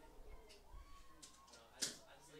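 Quiet stadium ambience with faint distant voices, and one sharp smack near the end.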